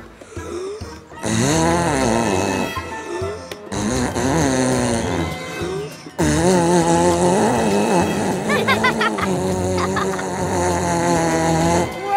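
A cartoon shell trumpet blown in three long blasts, each wavering in pitch, the last one running several seconds.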